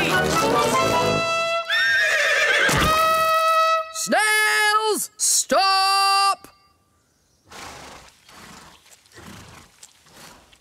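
A small brass hunting horn blown in one long held note, followed by two shorter, loud calls with the pitch bending at their start and end. After that only a soft, quiet rustling.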